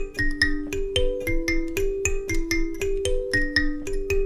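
Two Goshen student karimbas with metal tines, plucked by the thumbs in interlocking kushaura and kutsinhira parts, one part half a beat behind the other. The notes sound as a steady stream of ringing plucked notes, about six a second.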